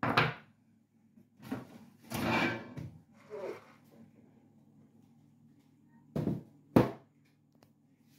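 Plastic fridge drawers and shelves being pulled out and handled: a few sliding scrapes and knocks, with a sharp plastic clack near the end that is the loudest.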